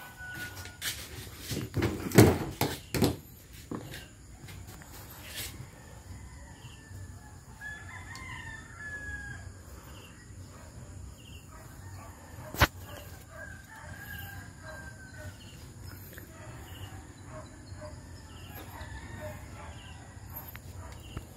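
A rooster crowing twice in the background. A wiper arm and blade being handled give a cluster of clicks and knocks in the first few seconds and one sharp click about midway.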